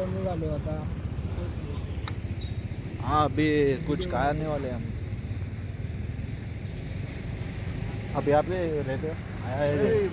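A vehicle engine running with a steady low rumble, and a voice speaking briefly twice over it. A single sharp click comes about two seconds in.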